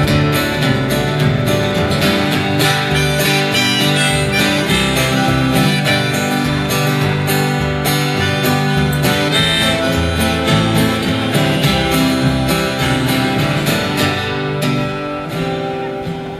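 Instrumental break from an acoustic bluegrass-style band: two acoustic guitars and a plucked upright bass playing, with no singing. The playing winds down near the end.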